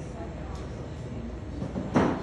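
Café room noise: a steady low rumble under murmured background conversation, with one sharp knock near the end.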